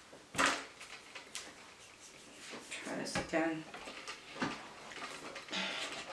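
A few knocks and clicks of small items being handled and set down on a tabletop; the loudest is a sharp knock about half a second in. A brief spoken word comes midway.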